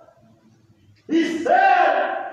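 A brief lull, then about a second in a loud voice comes in with long, held notes.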